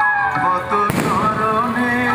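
Music with a wavering melodic line, and a single sharp firecracker bang about a second in.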